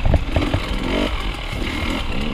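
Dirt bike engine running at low revs on a rough trail, with a brief blip of throttle about halfway and scattered clattering knocks from the bike.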